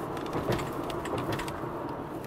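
Steady road and engine rumble of a moving car, heard from inside the cabin, with a few faint clicks.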